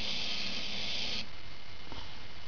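Pololu 3pi robot's two small gearmotors running, driving its wheels in opposite directions so it spins in place. It is a steady high whir that cuts off suddenly about a second in as the motors stop.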